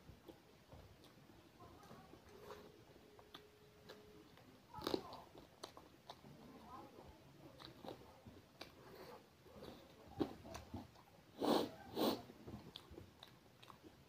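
Close-up eating sounds: a person chewing a mouthful of rice and fried food, with small wet clicks and a few louder bites, the loudest about five seconds in and twice around twelve seconds.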